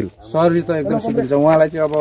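A man's voice speaking steadily, starting about a third of a second in.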